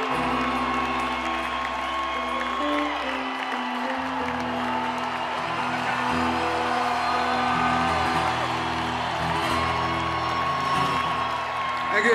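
Live rock band playing a slow song in an arena, with held chords and bass notes changing about once a second, over crowd noise with occasional whoops.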